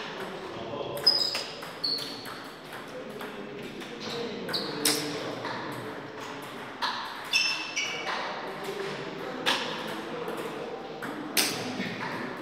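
Table tennis balls clicking sharply at irregular intervals, not in the steady rhythm of a rally, with a few brief high squeaks, in a large echoing hall with indistinct voices in the background.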